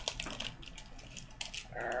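Faint small clicks and taps of a plastic powder compact being handled, then a short groaned "urgh" near the end.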